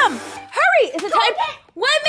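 Voices talking, a child's among them, with a brief drop to silence near the end.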